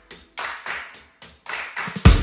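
A steady series of hand claps, about three a second, over faint lingering music notes.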